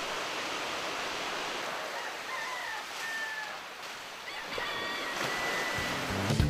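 Sea surf washing onto a shallow beach in a steady rush.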